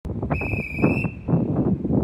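A departure whistle blown once by railway staff beside a stopped train: one high steady tone lasting under a second. Wind buffets the microphone throughout.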